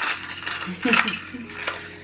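Clicks and rattles of a tea infuser bottle being taken out of its packaging and handled, the loudest clack about a second in.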